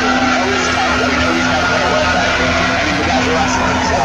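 Loud, continuous arena sound: music playing over the PA with held notes, mixed with crowd noise.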